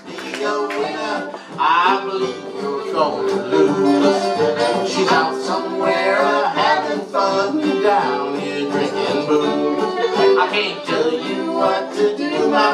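Acoustic string band playing a country-blues tune live: fiddle, two acoustic guitars and upright bass, with a voice singing the song.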